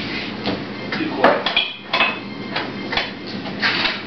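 Dishes and cups clinking and knocking as they are stacked into a dish rack: a string of about ten short knocks, one or two near the middle ringing briefly.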